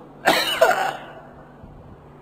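A man coughing once, briefly, about a quarter second in.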